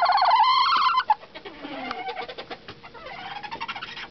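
Bantam rooster crowing: one loud crow, already under way, that rises and holds and then ends about a second in. Softer, lower calls with falling notes follow until near the end.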